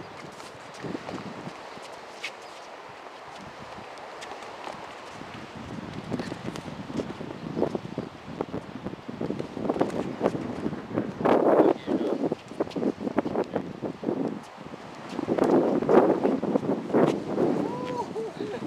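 Sneakers shuffling and scuffing on concrete during sparring footwork, with wind on the microphone. The sound is quieter at first, then comes in two louder flurries of rapid scuffs and knocks, around the middle and near the end.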